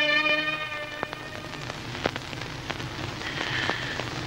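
A held, multi-toned musical note ends about half a second in. It gives way to a steady hiss scattered with sharp clicks and crackles.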